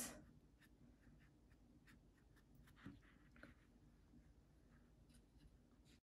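Near silence with faint, scattered scratches of a paintbrush on watercolour paper, one slightly louder about three seconds in.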